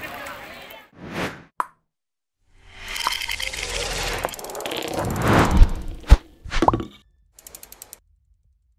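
Logo-animation sound effects: a short whoosh and a click, then a long swelling whoosh that ends in a few sharp hits, and a quick run of ticks near the end. Before them, the poolside ambience dies away about a second in.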